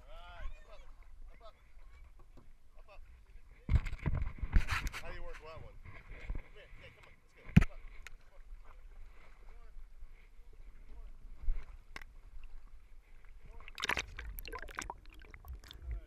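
Rubbing and handling noise from a camera harnessed to a dog's back, with scattered sharp knocks. A rustling burst comes about four seconds in as a hand touches the mount, and there are distant voices.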